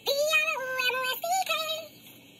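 A woman singing a short jingle into a handheld microphone, with no accompaniment, in a high voice: a few held notes that step down in pitch.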